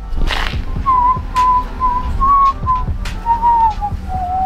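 A person whistling a short tune in held notes that stay around one pitch, then step down near the end, with a few knocks and clicks underneath.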